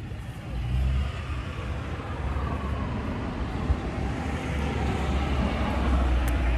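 Road traffic: a vehicle going by, with a steady low rumble and tyre-and-engine noise that swells through the middle.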